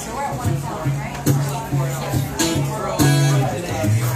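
Acoustic guitar playing the opening chords of a song, strummed chords ringing out about once a second over low bass notes.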